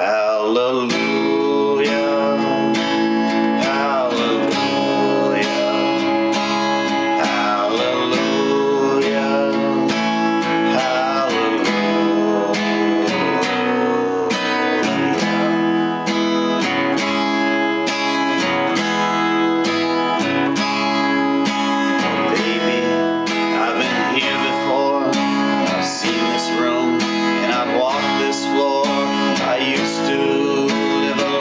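Acoustic guitar strummed steadily under a slow, wavering melody line.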